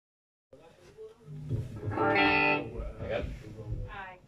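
Electric bass and guitar played briefly and loosely through amplifiers, with a voice mixed in. It starts about half a second in, and a held note with many overtones at about two seconds in is the loudest part.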